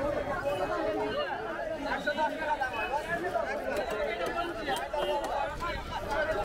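Many voices chattering at once in a busy market crowd, with no single speaker standing out.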